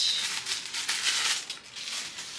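Thin white paper wrapping rustling and crinkling in the hands as a small compact mirror is unwrapped. The rustling thins out in the second half.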